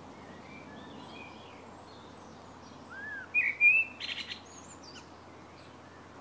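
Birds chirping and calling over a faint steady outdoor background. A little past halfway comes one louder call, followed at once by a quick run of rapid notes.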